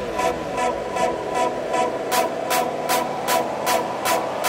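Breakdown in a hardstyle remix: the kick and bass drop out, leaving a rapid, even ticking of short high percussion hits, about five a second, over a held synth tone. Falling pitch sweeps die away in the first second.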